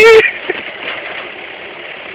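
A loud, high whooped "hui" cuts off just after the start. Then a forklift runs steadily as it is driven in circles, an even noisy hum with a small click about half a second in.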